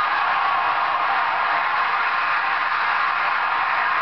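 Large crowd applauding steadily in a hall, heard through an old, dull-sounding television recording.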